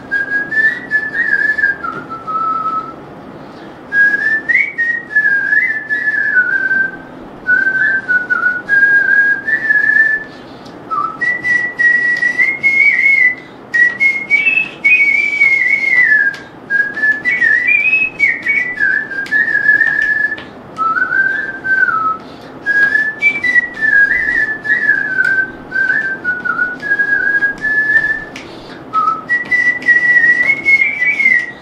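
A person whistling a song melody by mouth, one pure high tone moving from note to note in phrases broken by short pauses for breath.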